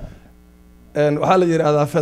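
A steady electrical mains hum heard in a pause of about a second between a man's words, which are amplified through a handheld microphone. His voice comes back about a second in.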